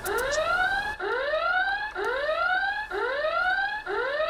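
Electronic warning alarm at a truck X-ray scanning portal, sounding a rising whoop about once a second, four times over.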